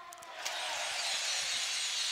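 Home crowd in an indoor basketball arena applauding and cheering a made free throw. The noise rises about half a second in and then holds steady.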